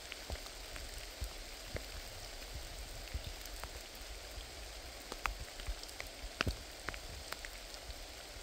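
Steady light rain falling in a forest, an even hiss with scattered sharp ticks of individual drops at irregular moments.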